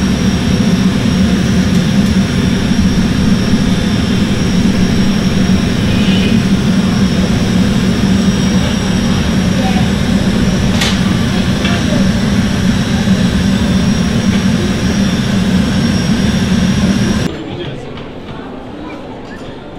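Steady roar of a gas-fired glassblowing furnace burner, with a single sharp click a little past the middle; the roar stops suddenly near the end.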